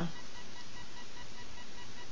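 Steady hiss of background noise with a faint, steady high-pitched whine underneath. No distinct event stands out.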